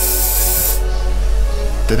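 A short hiss of aerosol spray from a can of Artel colourless fixative, lasting just under a second at the start, over steady background music.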